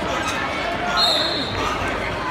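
Voices chattering in a large gymnasium, with one short, shrill referee's whistle blast about a second in.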